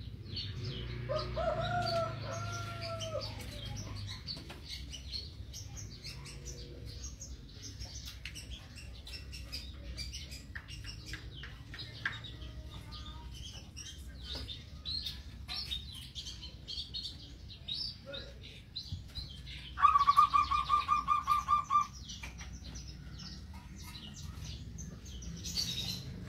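Birds calling around a cage: two short arched notes about a second in, scattered chirps and sharp clicks, and a loud, rapid pulsed trill lasting about two seconds near twenty seconds in.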